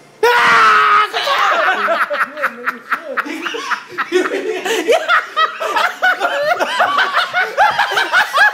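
A sudden loud shout, then a person's high-pitched, stifled laughter in quick breathy snickers that keeps going.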